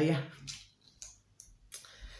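A kidney bean pod being cracked open by hand: a few small, faint clicks and crackles.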